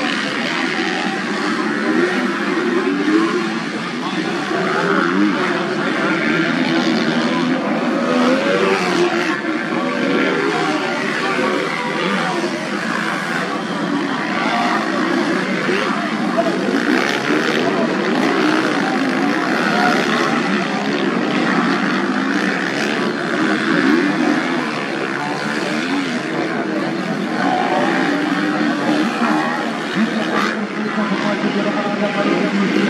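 Several 250 cc motocross bikes running and revving around a muddy grasstrack course. Their engine notes overlap and rise and fall continuously as the riders open and close the throttle.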